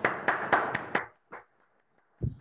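Hand clapping heard through a video call, irregular claps that cut off abruptly about a second in.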